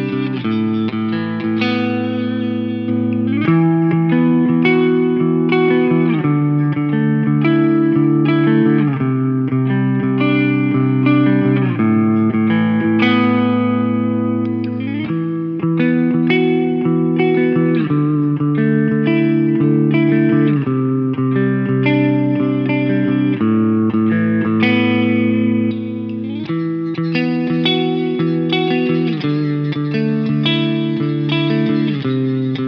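Mensinger Foreigner electric guitar played on a clean tone: ringing chords and sustained notes that change every second or two.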